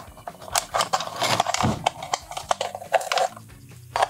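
Quick irregular clicks and taps from a small wooden puzzle box and its metal keys being handled, a key poking inside the box to move a hidden hook.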